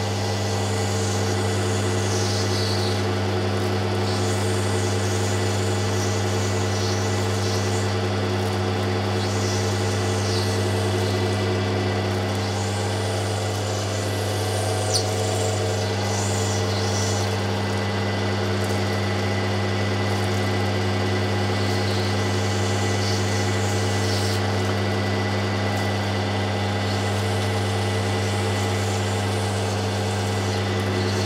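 Lapidary grinding machine running with a steady electric-motor hum while a piece of opal potch is ground on its wet wheel for shaping. A grinding hiss rises and falls as the stone is worked against the wheel.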